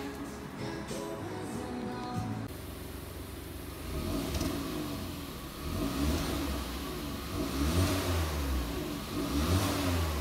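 Background music for about the first two and a half seconds, then a Hyundai Elantra Sport's 1.6-litre turbocharged four-cylinder engine revved several times through an aftermarket quad-tip exhaust, with the exhaust's vacuum valve still closed.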